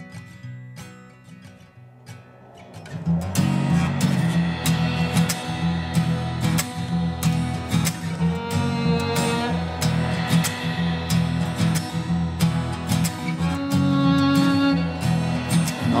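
Instrumental break in a folk song: guitar and violin over percussion. It opens quietly with a few ringing notes, and the full band comes in about three seconds in, with long sustained violin notes over a steady beat.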